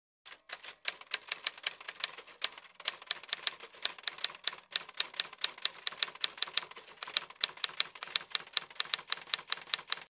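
Typewriter-style typing sound effect: a rapid run of key clacks, several a second, with the on-screen verse text. It cuts off suddenly at the end.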